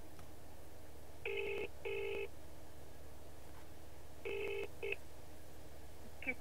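Telephone ringback tone of a call to a British number: the UK double ring, two short rings, a pause of about two seconds, then a second pair whose second ring is cut short as the call is picked up.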